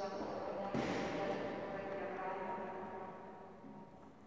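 Women's voices chanting together on long held notes, stepping to a new pitch a couple of times, and echoing in the church.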